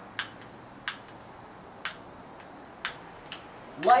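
Five sharp clicks, roughly a second apart, from an igniter being sparked to light a propane hand torch whose valve has just been opened.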